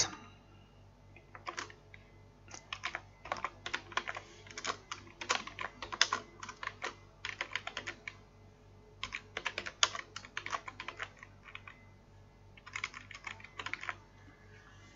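Computer keyboard typing: keystrokes in quick runs with short pauses between, and a final run near the end.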